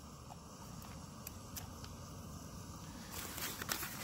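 Faint handling noises, light rustling and small clicks of ration packets being moved about. They grow busier near the end, over a low steady outdoor background.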